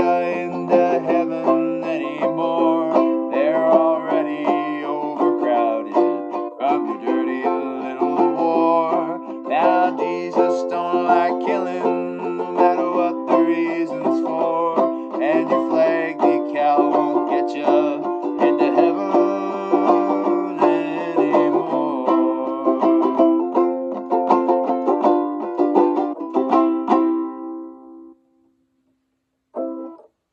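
Banjo ukulele strummed in a steady folk rhythm, chords ringing bright and twangy; the playing ends and rings away about two seconds before the end.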